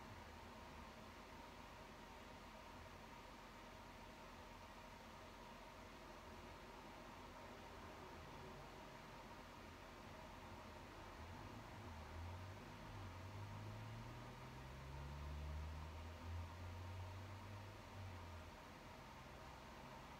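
Near silence: steady room tone with a faint hiss. A faint low rumble, rising slightly in pitch, swells from about eleven seconds in and fades before the end.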